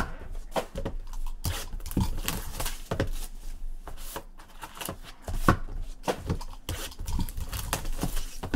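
Handling noise from a shrink-wrapped cardboard trading-card box: irregular taps, knocks and crinkles of plastic wrap as gloved hands pick it up and turn it over.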